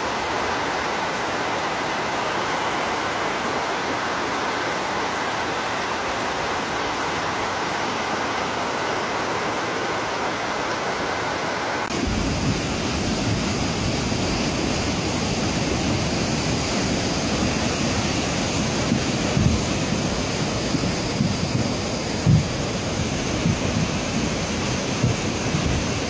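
Steady rushing noise of a muddy flood torrent. About halfway through it changes abruptly to a deeper rush, with a few short thumps near the end.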